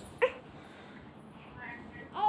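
A toddler's short, high-pitched squeal about a quarter second in, then a faint whine near the end.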